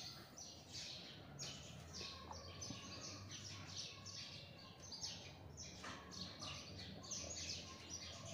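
A hand mixing spice-coated beef pieces in a stainless steel bowl: a faint, steady run of quick, irregular squishing and rubbing strokes.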